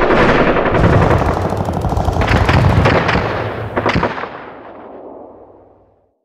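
Battle gunfire: a dense roar of rapid automatic fire with a few louder single shots, fading out to nothing over the last two seconds.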